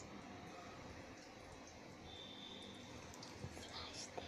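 Faint steady hiss of breaded chicken balls deep-frying in oil in a kadai, with a knock and a few clicks near the end.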